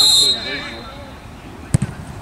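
A referee's whistle blows one short, shrill blast to signal the penalty kick. Near the end comes a single sharp thud as a boot strikes the football for the penalty.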